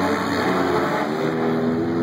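Engines of several figure-8 race cars running hard together on a dirt track, their pitch shifting about a second in as the drivers work the throttle through a turn.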